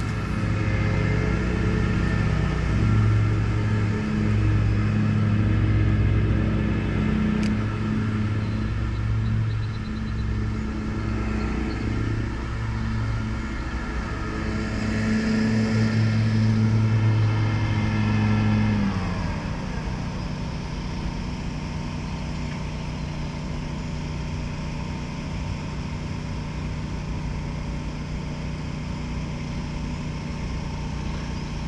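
Lawn mower engine running steadily; about two-thirds of the way through its note drops a little in pitch and level and it carries on at the lower note.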